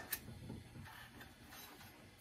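Faint handling sounds of a wooden spine piece being moved on a sheet-steel guitar top, with one sharp click just after the start and light taps after it.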